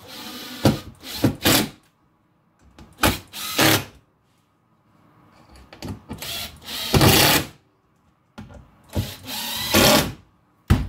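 Cordless drill running in several short bursts of one to two seconds, its motor whine starting and stopping with brief pauses between.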